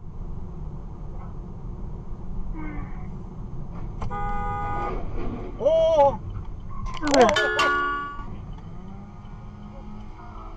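A car horn sounding, about four seconds in and again more loudly near eight seconds, over the steady road rumble of a moving car, as a car ahead loses control. A man's voice exclaims between the horn blasts.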